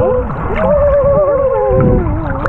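Several overlapping whistle-like calls heard underwater, wavering with a regular wobble and gliding up and down in pitch, over a low underwater rumble.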